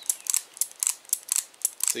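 Cimarron Lightning .38 Special revolver's action being worked by hand: a quick run of small metallic clicks, about five or six a second, as the cylinder turns with fired cases in its chambers. It turns freely without locking up or binding on the spent brass.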